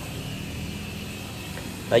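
Steady low background hum and noise with no distinct events.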